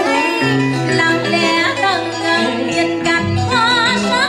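A woman singing live over amplified instrumental backing with plucked strings and a sustained bass line. Near the end she holds a note with a wide vibrato.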